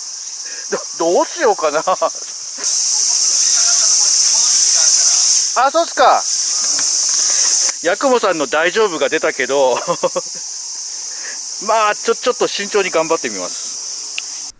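Summer cicadas buzzing in a steady, high chorus that swells louder for several seconds in the middle. Several short bursts of a wavering, pitched sound break in over the buzz.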